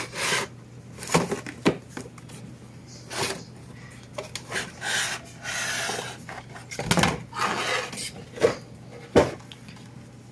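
Cardboard box and its inner packaging tray being opened and slid apart by hand: irregular rubbing and scraping, with several sharp knocks, the sharpest near the end.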